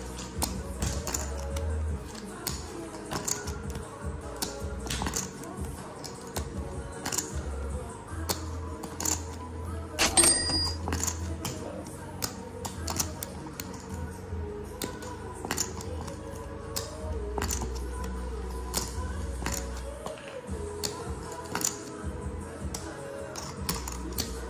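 Clay poker chips clicking against each other as a hand fiddles with and riffles a small stack of chips, in irregular clicks several times a second, with one sharper, ringing clack about halfway through. Music plays in the background.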